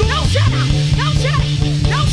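Live gospel worship band playing a held low note with drum hits, with many short rising-and-falling vocal cries coming several times a second over it.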